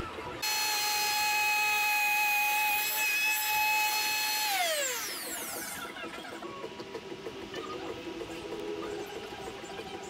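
Electric wood router switched on and running at full speed with a steady high whine, then switched off about four and a half seconds in, its motor winding down with a falling pitch.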